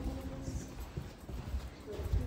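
Footsteps of people walking along a carpeted hallway: dull thuds in a walking rhythm.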